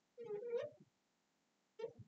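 Marker squeaking faintly on a glass lightboard as a shape is drawn: one longer, wavering squeak about half a second long near the start, and a short one near the end.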